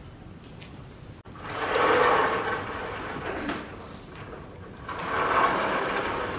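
A felt whiteboard eraser rubbing across the board in two long wiping stretches, the first starting about a second in and the second near the end.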